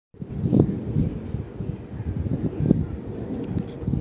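Wind buffeting a phone microphone outdoors: an uneven low rumble that starts suddenly just after the start.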